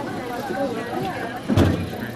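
Indistinct voices talking in the background. About one and a half seconds in there is a single loud, dull thump.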